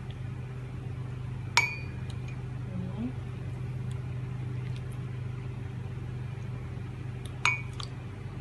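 A spoon clinking twice against a glass serving bowl while ladling pineapple drink, each clink ringing briefly, about a second and a half in and near the end. A steady low hum runs underneath.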